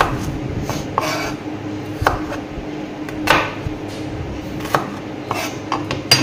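Chef's knife cutting shallots into chunks on a plastic cutting board: about eight irregularly spaced knocks of the blade against the board.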